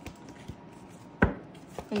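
Three sharp taps as a deck of cards is handled against the tabletop; the loudest comes a little over a second in.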